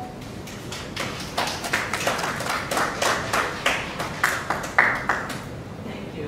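Small audience applauding, individual hand claps easy to pick out. The applause starts about half a second in, is thickest through the middle and dies away near the end.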